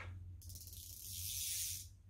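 Spinning reel's drag clicker ('chicharra') giving a fast, fine rattling buzz as line is pulled off against the drag, starting about half a second in and lasting about a second and a half. It is faint: this reel's drag clicker doesn't sound much.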